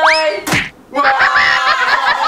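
A dart throw with a quick rising cartoon-style whistle, then one sharp thwack of impact about half a second in. Voices and laughter follow.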